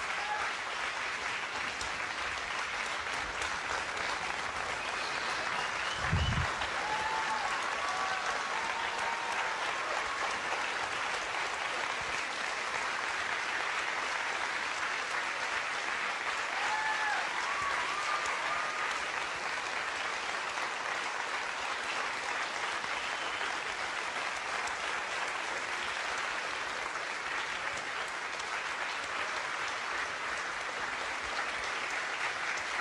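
Large lecture-hall audience applauding: steady, sustained clapping, with a few short high calls rising above it and one brief low thump about six seconds in.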